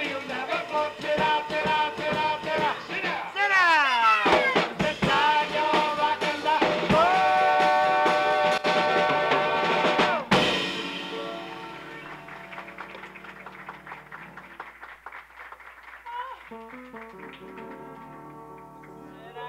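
Live jazz trio with a singer: swooping vocal lines and a long held note over piano, bass and drums, ended by a loud drum-and-cymbal hit about ten seconds in. After the hit, quiet piano notes.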